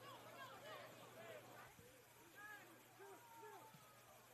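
Very faint ambience of a soccer match: distant voices calling out in short arching shouts, over a low steady hum.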